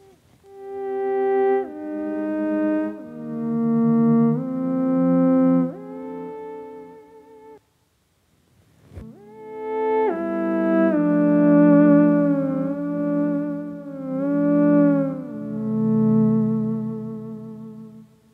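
Theremin played through a harmonizer pedal, each note sounding with added parallel harmony notes, octaves and fifths. Two phrases of held notes joined by smooth gliding slides, the second with vibrato, separated by a pause of about a second with a small click in it.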